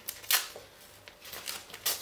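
Strips of tape being peeled off a painted cotton T-shirt: two short rips, about a third of a second in and near the end, with quieter crackling between.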